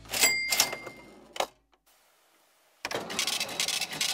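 A cash-register ring: clicks with a clear high tone held for about a second, paying for an order. It cuts to dead silence, then about three seconds in comes light clicking and rattling of small plastic toy pieces being handled.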